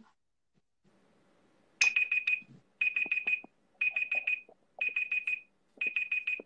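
Electronic timer alarm beeping in a steady pattern, a burst of four or five quick high beeps once a second, starting about two seconds in. It is typical of a speaking-time timer going off.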